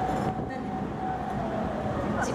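A single steady high tone, held for a few seconds, that dips slightly in pitch and fades near the end, over a noisy background.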